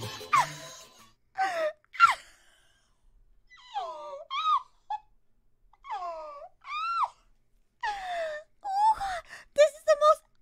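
A high-pitched voice making wordless moans and whines, about half a second each with gaps between, the pitch bending up and falling away. Near the end come a few quick wavering squeals.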